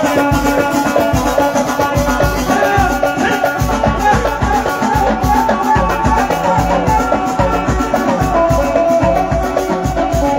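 Live band music with no singing: a drum kit keeps a steady beat under melody lines on keyboard and plucked strings, played loud through the stage speakers.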